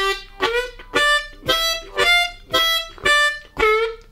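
Hohner Crossover C diatonic harmonica playing a two-bar blues riff of eight evenly spaced notes, about two a second, one per beat: it climbs through draw 2, the half-step-bent draw 3, draw 4 and blow 5, then comes back down through draw 5, blow 5 and draw 4 to end on the bent draw 3.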